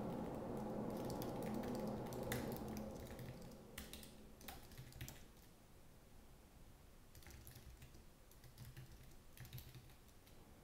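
Typing on a computer keyboard: irregular bursts of key clicks. A steady low hum under the first few seconds drops away about three seconds in.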